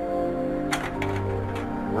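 Background music with sustained, held notes, and a few sharp mechanical clicks about three-quarters of a second in: a Kodak Carousel slide projector advancing to the next slide.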